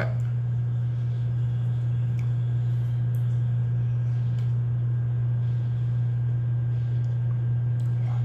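A steady low hum throughout, with a few faint clicks about two, three and four seconds in.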